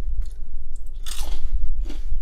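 A steady low hum, with a few short, noisy rustles over it; the loudest rustle comes about a second in.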